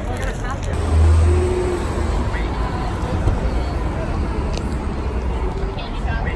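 Street ambience: steady traffic rumble with a low swell about a second in, as from a passing vehicle, under faint background chatter of passers-by.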